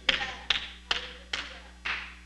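Five sharp taps in an even rhythm, about two a second.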